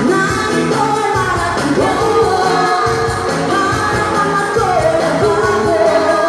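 Live pop song sung into microphones by a vocal trio over music accompaniment, with held, melodic sung notes throughout.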